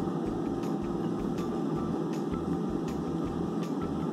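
A steady background hum like a running machine, with a few faint light ticks.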